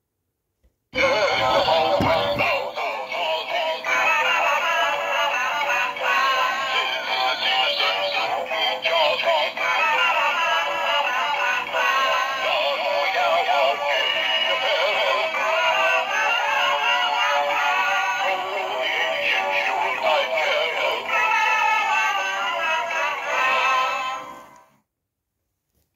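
Animated singing-and-dancing Christmas toys, a plush snowman and a tinsel Christmas tree, playing a recorded song with a synthetic-sounding singing voice. The song starts abruptly about a second in and cuts off at the end.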